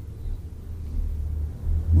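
A low rumble with no speech over it, growing louder toward the end.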